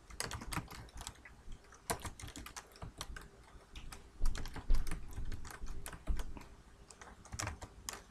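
Typing on a computer keyboard: a quick, irregular run of key clicks with short pauses, as words and a number are entered into form fields.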